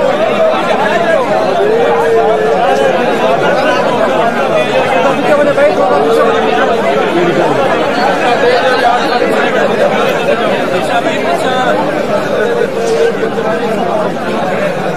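A large crowd of men talking at once: a dense, steady babble of many overlapping voices, with an occasional voice held a little longer above the rest.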